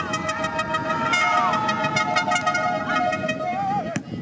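Horns blown by spectators: several long held tones that overlap and bend in pitch, one wavering near the end, over the steady noise of the crowd.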